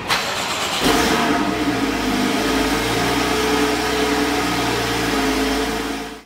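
Porsche 981 Boxster's 2.7-litre flat-six engine starting: a sudden burst as it fires, rising to its loudest about a second in as it catches, then settling into a steady idle.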